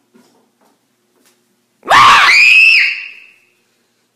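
Near quiet at first, then about two seconds in a sudden, loud, high-pitched scream of fright from someone jump-scared, its pitch sweeping up and held for about a second before trailing off.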